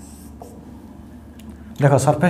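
Marker pen drawing on a whiteboard: a short scratchy stroke at the start, then a couple of light taps of the pen. A man's voice starts near the end.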